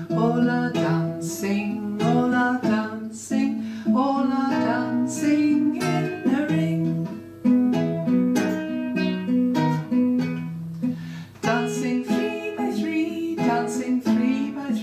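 A woman singing a simple children's circle-game song over acoustic guitar accompaniment.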